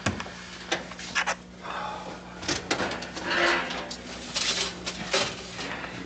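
Kitchen clatter from tea-making: tins, lids and crockery knocked and handled on a counter, a string of sharp clicks and knocks with short rustling stretches. A steady low hum runs underneath.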